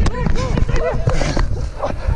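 Rugby players' distant shouts over a heavy low rumble of wind and movement on a body-worn camera's microphone during running play.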